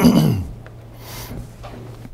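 A man coughs once, then a quiet pause with a faint low steady hum and a short breath about a second in.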